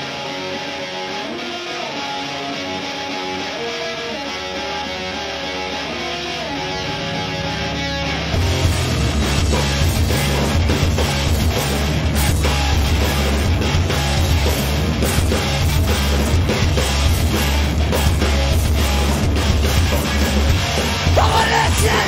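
Live rock band opening a song: a lone electric guitar picks a melodic line, then about eight seconds in the full band comes in loud with guitars, bass and drums. A yelled vocal begins at the very end.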